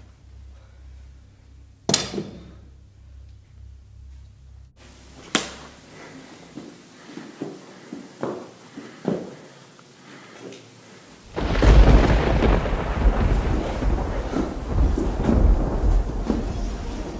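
Sharp clacks and lighter knocks of stage-combat practice sticks striking: one loud crack about two seconds in, then a run of smaller knocks. About eleven seconds in a loud, sustained, deep rumble begins and carries on.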